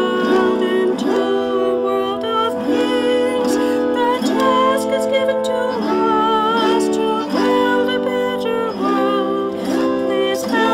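A woman singing while strumming chords on an autoharp, the strums sweeping across the strings every second or so as the chords change.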